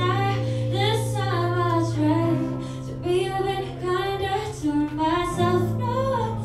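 A woman singing a song live to her own baritone ukulele accompaniment, the sung melody over held strummed chords that change twice.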